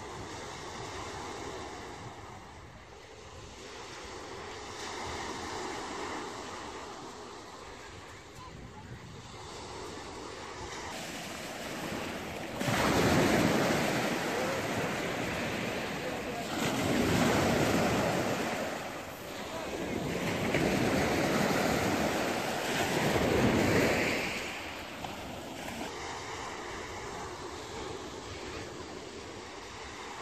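Sea waves breaking and washing up a sand-and-pebble shore, in three loud surges a few seconds apart through the middle of the stretch. Before and after them comes a fainter, steady wash of surf.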